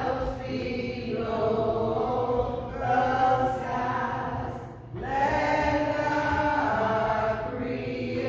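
A small congregation singing a hymn together in long, held phrases, with short breaks about three and five seconds in.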